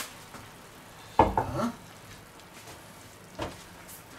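Hot vegetables and broth gurgling and sizzling in a terracotta Römertopf clay baker fresh from the oven, a faint steady hiss, with a short louder bump about a second in and a smaller one past three seconds.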